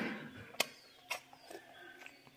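A small child eating noodles: a few short clicks and smacks of chewing and chopsticks, with faint background in between.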